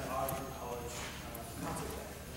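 A solo male voice intoning Latin liturgical chant in held, fairly level-pitched phrases: one phrase through the first second or so, a short pause, then the next phrase beginning near the end.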